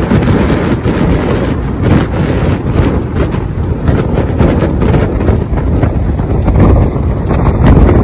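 Wind buffeting the microphone: a loud, gusty low rumble that rises and falls without a break.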